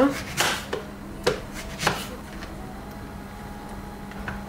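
Kitchen knife chopping a nectarine into small pieces on a plastic cutting board: about five sharp knife strikes in the first two seconds, then quieter, over a faint steady low hum.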